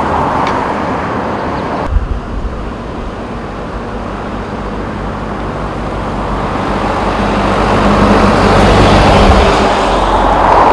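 Road traffic passing at speed on a highway, a steady rush of tyres and engines that swells over the last few seconds as vehicles go by close. A brief sharp click about two seconds in, where the sound changes abruptly.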